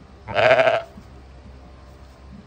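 A newborn North Country Cheviot lamb bleating once, a short, high call of about half a second starting about a third of a second in.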